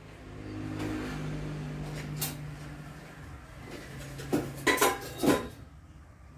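Cooking utensils clinking against pans and each other, with several sharp knocks in the last two seconds, over a low steady hum.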